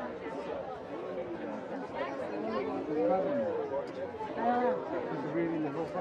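Indistinct chatter of several voices talking over one another, with no single clear speaker.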